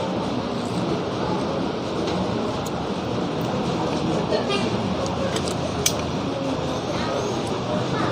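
Steady background din of an open-air restaurant terrace: an even hum of noise with faint, distant voices. A single light click comes near six seconds in.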